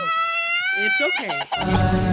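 A single high call in a gap in the music: a short rising note, then a long high note held for about a second and rising slightly, ending in lower falling sounds.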